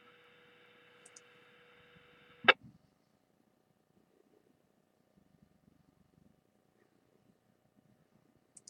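Radio receiver on the repeater channel passing a steady hiss with a low steady tone over it for about two and a half seconds. A sharp click then cuts it off as the repeater's carrier drops and the squelch closes, leaving near silence with a few faint tiny ticks.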